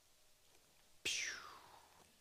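A man's short breathy whoosh made with the mouth, starting suddenly about a second in, falling in pitch and fading within about half a second, after a second of near silence.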